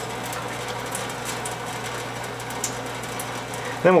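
Tap water running steadily from a faucet into a stainless steel sink, with a steady low hum underneath.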